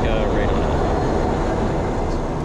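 Twin turboprop engines and four-blade propellers of a Cessna Conquest I, heard from inside the cockpit as a steady, loud drone while the aircraft rolls out on the runway after touchdown.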